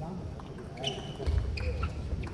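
Celluloid-type table tennis ball being struck by rubber-faced rackets and bouncing on the table during a fast rally: a quick series of sharp clicks.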